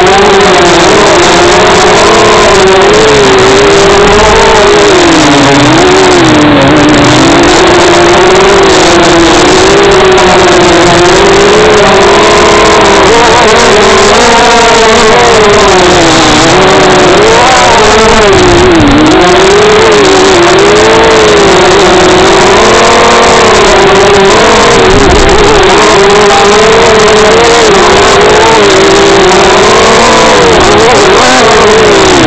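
Racing quadcopter's electric motors and propellers buzzing loudly, heard from its onboard camera, the pitch rising and falling constantly throughout.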